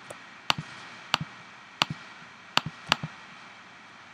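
Sharp, separate computer mouse clicks, about five spaced unevenly at roughly half-second to one-second gaps, with a few fainter clicks between.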